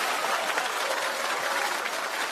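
Studio audience applauding after a joke, the clapping slowly dying down.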